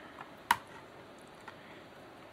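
One sharp click about half a second in, with a couple of faint ticks, from the axle and arm of a homemade magnet gravity wheel being reset by hand.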